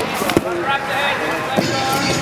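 Two sharp thuds about a second apart: grapplers' feet and hands slapping the foam competition mat during a scramble for a takedown, over shouting voices in the hall.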